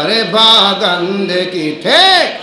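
A man's solo voice singing an unaccompanied Bengali devotional gojol into a microphone. He holds long, ornamented notes, then sweeps one note up and back down near the end.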